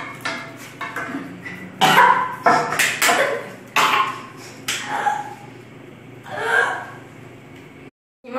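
A young girl coughing and gagging harshly on a spoonful of dry ground cinnamon, in a run of loud bursts from about two seconds in to about five seconds and one more a little later. The powder is burning her throat and making her choke it back out.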